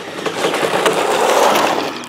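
Traxxas Deegan rally RC car speeding toward and past, its tyres rolling over gritty asphalt with small grit crackles. It grows louder to a peak about one and a half seconds in, then fades.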